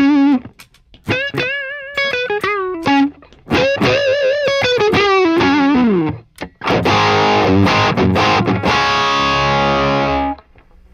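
Electric guitar played through a Friedman BE-OD overdrive pedal into a vintage 1960s blackface Fender Bassman head. It plays distorted single-note lead phrases with wide vibrato and notes sliding down. Near the end a thick distorted chord rings for about three seconds, then is cut off.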